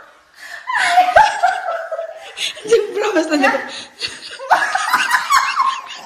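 A person laughing hard in three bursts, about a second in, around three seconds in, and again near five seconds, with pitch sliding down in the middle burst.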